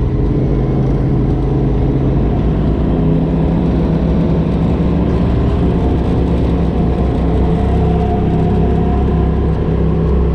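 Polaris RZR side-by-side engine heard from the driver's seat, running steadily in the mid-rpm range at a slow crawl, its pitch rising slightly partway through.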